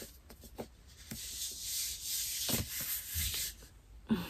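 A long, soft, hissing inhale through the nose, lasting about two and a half seconds, as a new hardcover book is held against the face and smelled.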